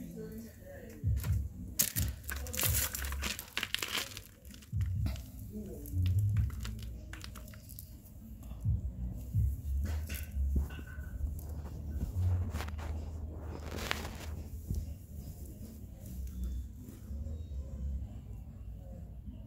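Handling noise of a camera being picked up and repositioned: rustling and crinkling of fabric against the microphone, with scattered clicks and low bumps.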